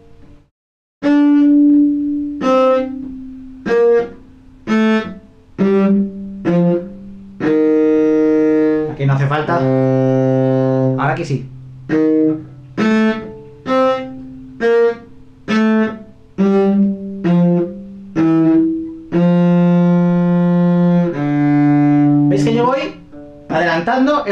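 Solo cello playing a slow étude passage of detached eighth notes in first position, with a few longer held notes. The bow stops briefly between notes so the next finger can be placed, which leaves short gaps.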